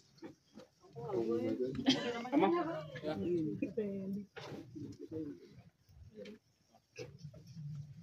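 People's voices talking in short stretches, loudest in the first half, then quieter with a few short clicks.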